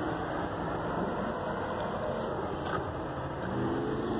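Steady rushing outdoor background noise, with a low hum coming in near the end.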